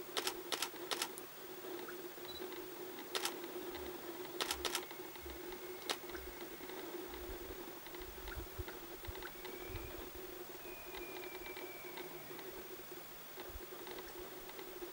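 Handling noise on a camera rig: several sharp clicks and ticks in the first six seconds, over a steady low hum.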